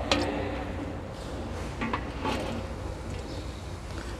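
A thin stream of used CVT transmission fluid trickling steadily into a pool of drained oil in a drain pan, with a few faint knocks. This is the old fluid draining out at the start of a transmission fluid change.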